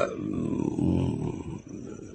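A man's voice holding a long, low hesitation sound, a drawn-out 'eeh' in the middle of a sentence, that fades away in the last half second.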